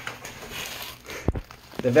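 Tactical plate carrier vest rustling as it is pulled off after being unclipped, with a sharp knock a little over a second in and a fainter one after it.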